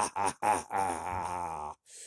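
A man's voice acting out a monster's laugh: the last few short laugh pulses, then one long wavering groan that cuts off suddenly near the end.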